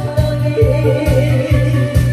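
Woman singing a Korean song into a microphone over amplified accompaniment with a steady bass beat, about two and a half beats a second.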